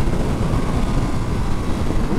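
Ducati Monster SP's 937 cc Testastretta V-twin running steadily under way on the road, heard from the bike with wind rush mixed in.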